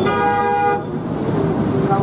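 A vehicle horn gives one steady toot lasting under a second, followed by street noise and voices.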